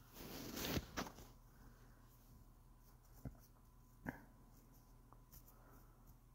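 A faint breath just after the start, swelling for about half a second, then a few faint isolated clicks.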